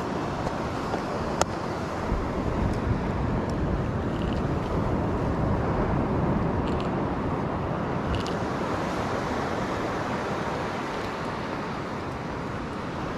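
Steady wind rumbling on the microphone over the wash of beach surf, swelling a little around the middle, with one sharp light click about a second and a half in.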